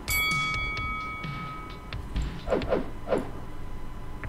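A bell-like notification chime from a subscribe-button animation, struck once and ringing on for about two seconds before dying away.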